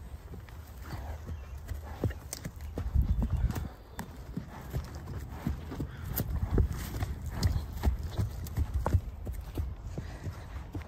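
A horse grazing right beside the microphone: irregular crisp snaps and crunches of grass being torn and chewed, over low thumps.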